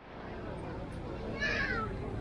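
Busy market street ambience: a steady low hum of passers-by and traffic, with background voices. About one and a half seconds in, a single short, high cry that falls in pitch stands out above it.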